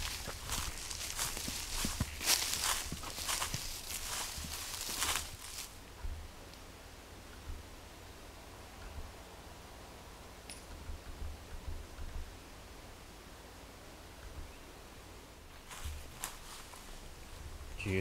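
Footsteps crunching on a trail of dry leaves and brushing through palmetto scrub for the first five seconds or so, then quiet with a few faint clicks and a brief high chirp. A short burst of crackling comes near the end.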